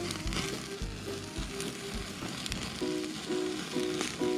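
Background music, its short repeated notes growing busier in the second half, over a steady sizzle with scattered crackles from a whole turkey roasting over an open wood fire.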